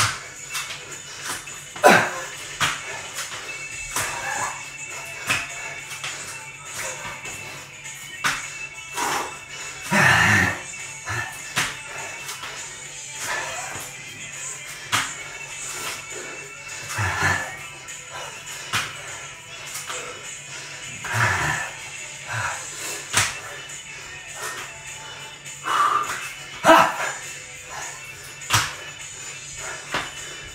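Background music, with the sharp slaps of hands and feet landing on a tiled floor as a man does burpees, and a few loud, strained exhalations between them.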